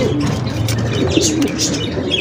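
Several caged satinette pigeons cooing, low rolling coos overlapping one another, with scattered light high clicks and rustles.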